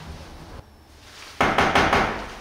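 A fist knocking on an apartment front door: a quick run of about four knocks about a second and a half in.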